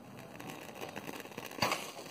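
Homemade aluminium-foil mini cannon heating over a candle: a crackling fizz builds, then a single sharp pop about one and a half seconds in as it fires its toothpick, followed by a brief hiss of flame from the barrel.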